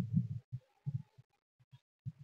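Soft, irregular low thuds from a handheld phone being carried by someone walking: footsteps and handling noise, a quick cluster at the start and then single thuds a few times a second.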